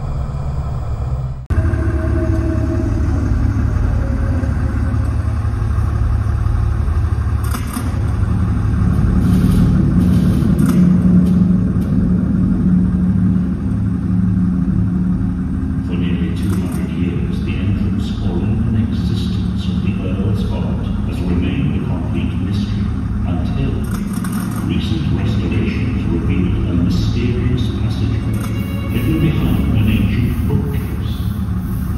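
Themed ride ambience of a dark attraction: a loud, steady low rumbling drone that starts abruptly about a second and a half in. Scattered sharp crackles and clicks join it from about halfway through, with voices underneath.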